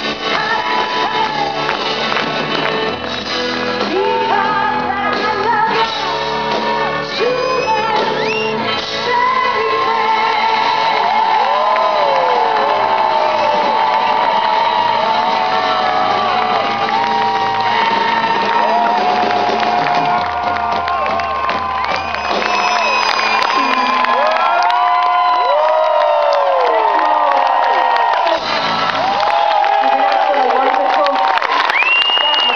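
Live pop-rock band with a woman singing lead, heard from within the crowd, which shouts and whoops along. The bass drops out about three-quarters of the way through, leaving the vocals and lighter backing.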